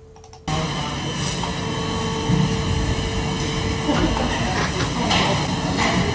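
Steady machinery noise of a plastic injection-moulding shop floor: a dense mechanical hum with several steady tones. It cuts in suddenly about half a second in.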